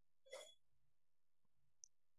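Near silence: room tone, with one faint short rustle-like noise about a third of a second in and a tiny faint click near the end.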